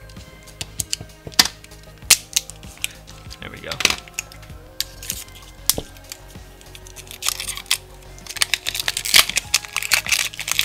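A small knife clicking and scraping against a foil-wrapped dig block in sharp separate ticks. Then, from about seven seconds in, the thin gold foil wrapper crinkles and tears as it is peeled off the block.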